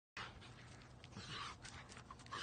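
Rottweiler panting in short breaths while chewing and shredding a small stick, with a few small sharp cracks from the stick.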